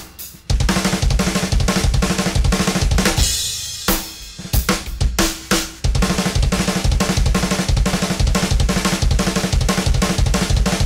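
Drum kit with a double bass pedal playing double bass drum fills: rapid kick-drum strokes alternating right and left foot, broken up by groups of snare and tom strokes, with cymbal crashes. The fill phrases start with two kick notes, right foot then left, before the hands. The playing thins briefly a little after three seconds, then runs dense again.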